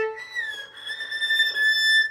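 Violin bowing one high note: it slides down a little about half a second in and is then held steady, the top A of a three-octave A melodic minor scale.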